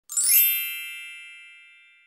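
A single bright, high chime that rings out once and fades away over about two seconds.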